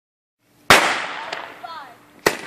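A firework goes off with a single loud, sharp bang about 0.7 s in, its echo dying away over the next second, followed by a smaller pop about half a second later.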